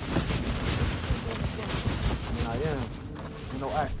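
Wind buffeting the microphone outdoors, under indistinct voices, with a short laugh near the end.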